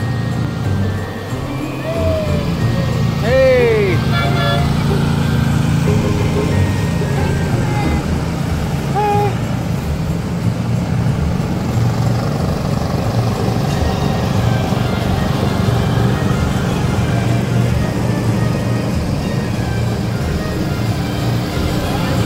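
Slow-moving parade vehicles with a steady low engine rumble, with music and voices mixed in. A short pitched call swoops up and down about three and a half seconds in.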